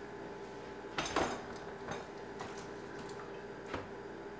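Light knocks and rustles of fresh produce being picked up and set down by hand, the loudest about a second in and a few smaller ones after, over a steady low hum.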